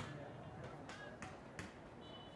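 Faint outdoor soccer-field ambience with distant voices and a few sharp knocks spread across the two seconds.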